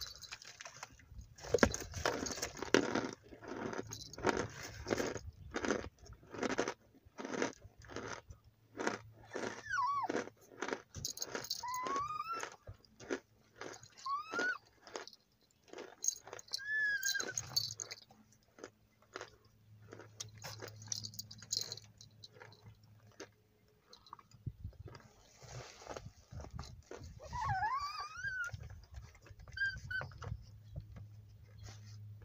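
Crunching and chewing of hard cornstarch chunks, a run of crisp bites several a second through the first half, with a plastic bag crinkling now and then. A small dog whines several times, short rising and falling cries, mostly in the middle and near the end.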